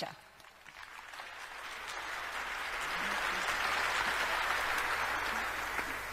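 Audience applause, swelling over the first two seconds from near silence and then holding steady.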